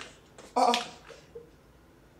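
A brief exclamation from a person's voice, about half a second in.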